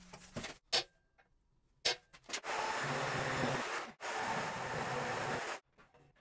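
A few light knocks as steel parts are handled, then a power tool working on sheet steel in two steady runs of about a second and a half each, starting and stopping abruptly.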